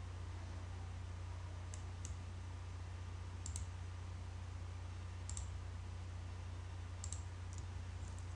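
Computer mouse clicks, a handful of short sharp clicks, some in close pairs, spaced a second or two apart, over a steady low hum.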